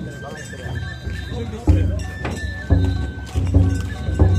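Festival hayashi music from the float. A high flute-like note holds with small trills from early on, and about halfway through deep drum beats and sharp strikes come in, louder than the start.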